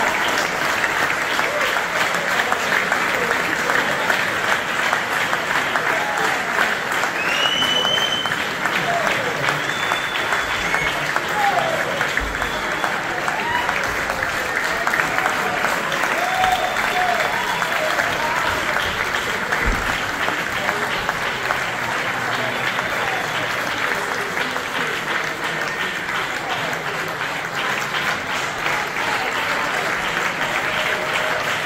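Theatre audience applauding steadily, a dense continuous clapping, with voices in the crowd and a few short high whistles about eight seconds in.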